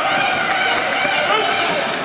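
Several voices calling and shouting at once in an indoor ice rink, over a steady background haze.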